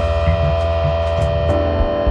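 Live instrumental music in a held, droning passage: layered sustained chord tones over deep bass, shifting to new notes about one and a half seconds in, with a few light percussion ticks.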